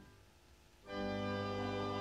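Church pipe organ playing a hymn: the chord dies away into a brief pause, then a new sustained chord comes in just under a second in as the next verse begins.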